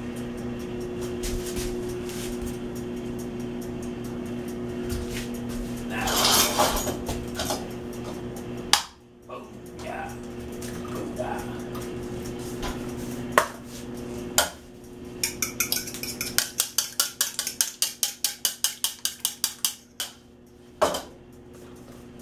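Sunbeam microwave oven running with a steady hum. About fifteen seconds in, a fork beats quickly against a ceramic bowl, a rapid run of clinks about five a second, lasting some five seconds.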